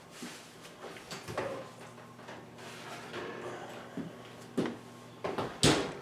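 An oven door opening and a baking sheet sliding out on the oven rack: a few knocks and scrapes, the loudest sharp knock just before the end, over a low steady hum.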